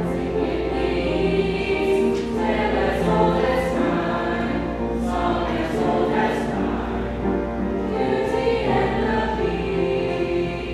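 A mixed choir of teenage boys and girls singing together in sustained, held chords, the sung consonants coming through as short hisses.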